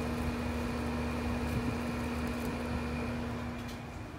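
Steady machine hum, with a constant mid-pitched tone and a faint high whine over a low rumble, easing off a little near the end.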